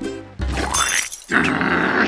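Cartoon sound effects over background music: a noisy crash-like burst with a rising sweep about half a second in, then a longer rasping burst from just past a second in.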